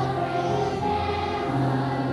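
A large children's choir singing together, holding sustained notes over steady low notes underneath.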